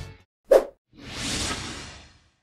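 Video-editing transition sound effects: a short pop about half a second in, then a whoosh that swells and fades over about a second.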